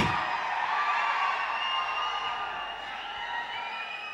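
A large audience cheering and whooping, the many voices blending together, loud at first and dying down over the few seconds.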